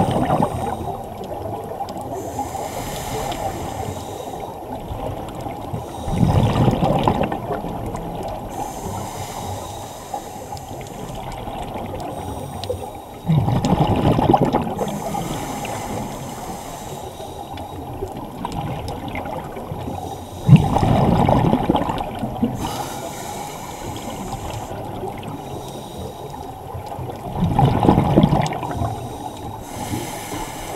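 Scuba diver's exhaled breath bubbling out of the regulator, heard underwater: five bursts of about a second and a half each, roughly seven seconds apart, over a steady underwater hiss.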